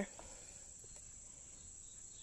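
Quiet background tone between narration: a faint hiss with a thin, steady high-pitched whine.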